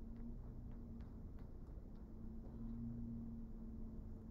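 Faint steady low hum with a few light, scattered ticks from a stylus on a tablet screen as a line is drawn.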